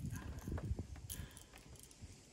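Irregular soft knocks and rustles from handling a just-caught largemouth bass and the crankbait hooked in it, busiest in the first second with one sharper click, then quieter.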